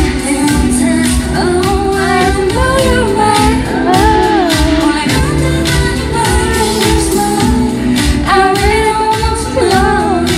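Live K-pop concert audio: a solo female singer singing into a handheld microphone over a pop backing track with a steady beat.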